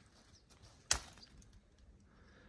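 A single sharp click about a second in, over a faint background.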